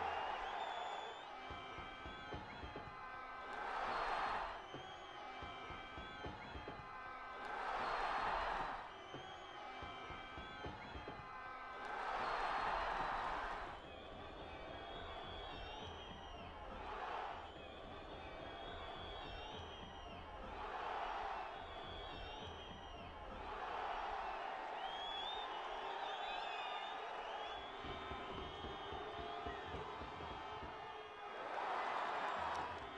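Football stadium crowd at a penalty shootout, with a steady din that swells into loud cheers every few seconds as the kicks are taken.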